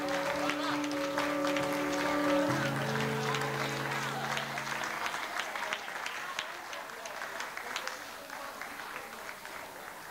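Audience applauding, the clapping thinning and fading toward the end, over the held final chords of a song, which stop about halfway through.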